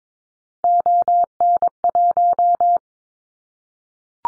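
Morse code sent as a steady beep tone at 22 words per minute, keyed in long and short elements spelling the callsign prefix ON1 (dah-dah-dah, dah-dit, dit-dah-dah-dah-dah). It starts over half a second in and stops a little under three seconds in.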